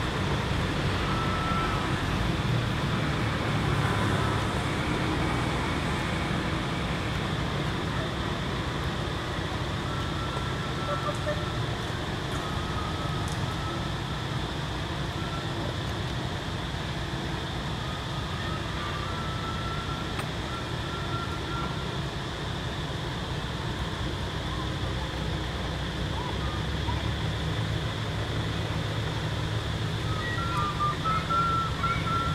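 Steady outdoor background noise, low and even, with faint short high chirps now and then.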